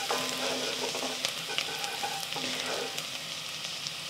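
Garlic frying in shallot oil in a pan, a steady sizzle with a few light clicks from the utensil.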